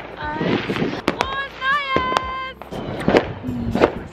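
New Year's firecrackers going off several times in short sharp bangs, mixed with people shouting and cheering in high voices.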